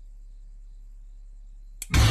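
A low steady hum, then near the end a sharp hit and the sudden loud start of a horror-film music stinger, a jump-scare cue.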